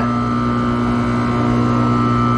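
Electric-hydraulic power unit of an Atlas 9KBP two-post lift running steadily as the empty carriages are raised, a constant hum with a thin high whine above it.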